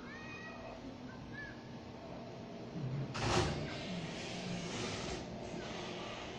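An animal's cry, loud, starting about three seconds in and lasting about two seconds, with faint short high chirps before it.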